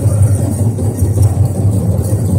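Powwow big drum pounding a fast, steady beat for the men's fancy dance, heard as a loud low rumble.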